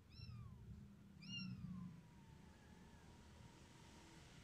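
A very young kitten mewing twice while being bottle-fed: high, faint cries that fall in pitch, the second trailing off into a thin fading whine.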